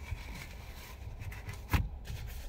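A fabric steering wheel cover being stretched and worked onto a car's steering wheel: quiet rubbing and handling, with one sharp knock near the end.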